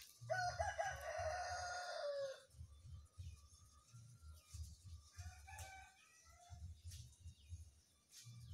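A single long bird call lasting about two seconds near the start, falling in pitch at its end, then a shorter, fainter call around the middle, over an uneven low rumble.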